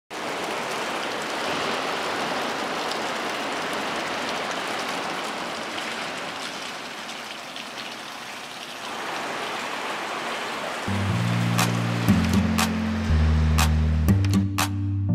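A steady, water-like rushing noise for about the first ten seconds. About eleven seconds in, background music comes in with a deep, steady bass line and sharp percussive clicks.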